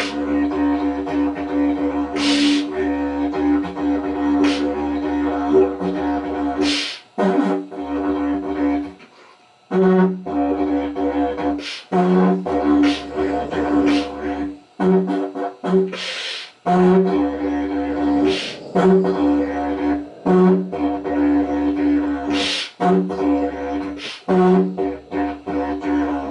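A didgeridoo played as a low, continuous drone broken into rhythmic pulses, with short sharp accents every few seconds. The drone drops out for about a second around nine seconds in.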